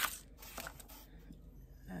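Faint rustling and a few light ticks as hands rummage through a white wig box and its packing, with a sharp click at the start.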